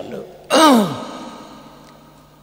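A man's voice giving one breathy, drawn-out syllable that falls in pitch, about half a second in, then a pause with a faint steady hum underneath.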